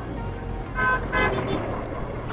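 A vehicle horn sounding two short toots about a second in, over a steady low rumble of riding on the road.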